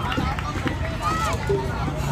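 Many children's high voices chattering and calling out at once, overlapping into a babble, over a steady low rumble.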